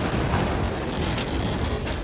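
SpaceX Starship SN8 prototype's Raptor rocket engines firing, a steady loud rush of noise from deep rumble to hiss.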